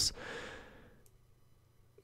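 A man's breathy exhale, like a sigh, into the microphone, fading out over about a second.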